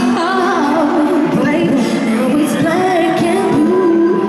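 Four-member female pop group singing live in harmony over backing music, held and gliding sung notes.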